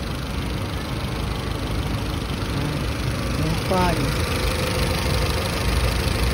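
Honda Accord engine idling steadily while it overheats with the radiator cap off. The coolant is not circulating properly, which the mechanic puts down to a thermostat that most likely no longer opens.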